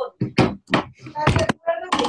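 A quick run of sharp knocks, several in two seconds, mixed with bits of speech.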